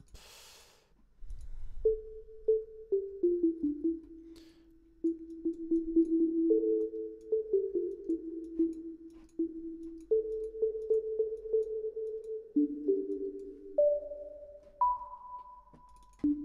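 Sine-wave pluck pad synthesized in Harmor with chorus, played as a slow melody of single pure-tone notes in the middle register. Each note starts sharply and rings on into the next, and near the end the line steps up to two higher notes.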